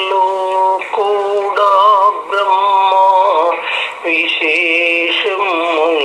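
A single voice singing a devotional song in drawn-out phrases, holding notes that sometimes waver, with short breaks between phrases.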